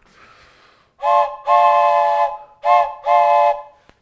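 Wooden toy train whistle blown four times, in two short-then-long pairs, each blast several steady notes sounding together like a train's chime whistle.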